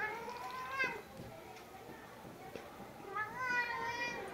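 Domestic cat meowing softly twice: a drawn-out rising meow at the start and another that rises and falls near the end.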